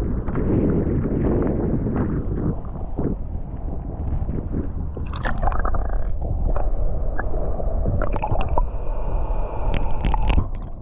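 Choppy lake water sloshing against the camera at the surface, turning to muffled underwater gurgling with many quick bubble pops and clicks from about halfway through as the camera goes under.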